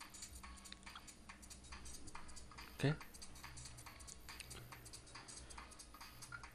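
Faint clicking at a low level, with one brief louder sound just before three seconds in.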